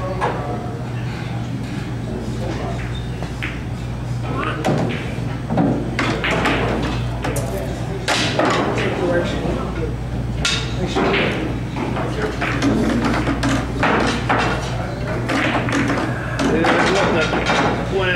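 A pool cue striking the cue ball and billiard balls clicking together, followed by a scatter of sharper clicks and knocks of balls over the next several seconds. Voices murmur in the background and a steady electrical hum runs underneath.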